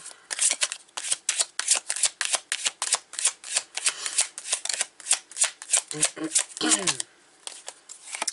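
A tarot deck shuffled by hand: a quick, even run of papery card slaps, about five a second, ending shortly before a throat clear near the end.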